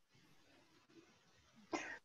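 Near silence of a pause on a video call, then a short throat sound from a person near the end.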